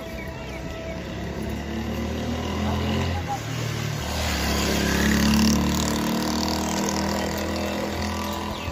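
Busy street ambience of crowd chatter and footsteps, with a vehicle engine running close by that grows louder and is loudest about five seconds in.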